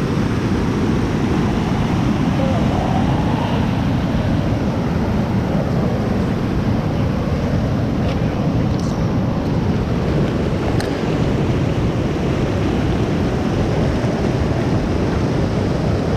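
Floodwater rushing over the rock ledges of a dam spillway, a loud, steady churning of white water as the reservoir spills over at capacity.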